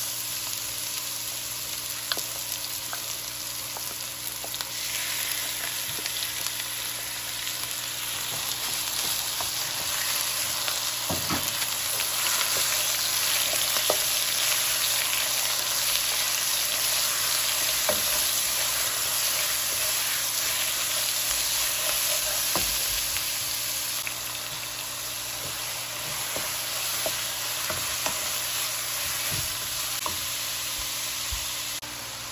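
Seasoned chicken pieces frying in hot oil with garlic, a steady sizzle. A wooden spoon stirs, scraping and tapping against the pan with small clicks.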